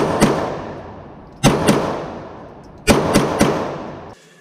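Stoeger STR-9 9mm pistol fired in three quick double taps, the two shots of each pair about a quarter second apart and the pairs about a second and a half apart. Each pair rings out in the reverberation of an indoor range.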